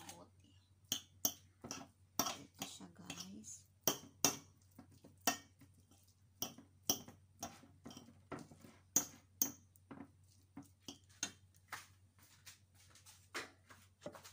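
Metal fork clinking and scraping against a ceramic plate while mashing corned beef, in many quick, irregular taps, a few each second.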